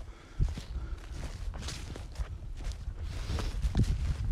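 Footsteps on dry fallen leaves and twigs dusted with light snow, at a walking pace of about two steps a second, over a low steady rumble.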